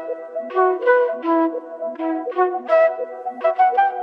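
Instrumental hip-hop type beat in a breakdown: the drums and bass are dropped out, leaving a lone melody of short pitched notes.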